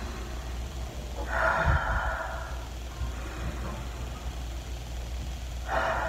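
A woman taking slow, deep breaths: one long breath about a second in, and another starting near the end.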